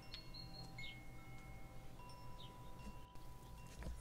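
Faint chime tones: a few single high notes struck at different moments, each ringing on and overlapping the others.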